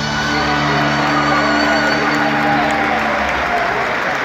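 A live band's closing chord held and then stopping about three seconds in, while the crowd applauds and cheers at the end of the song.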